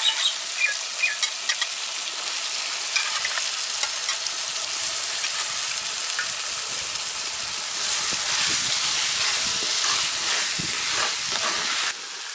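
Jackfruit seeds, onion and tomato sizzling in oil in a clay pot while a wooden spatula stirs and scrapes them. The sizzle grows louder about eight seconds in, and there are a few short squeaks in the first seconds.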